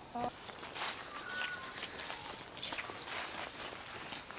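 Footsteps of people walking, with irregular crunching steps through dry fallen leaves.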